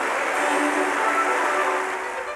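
Orchestral music playing, its held notes half-covered by a steady noisy wash, dropping slightly in level near the end.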